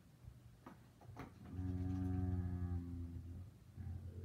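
A couple of soft clicks, then one low steady hummed note held for about a second, from a person's voice.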